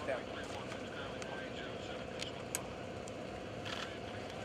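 Small World War II liaison plane's engine running low and steady as it lands, under faint voices of spectators, with a few sharp clicks.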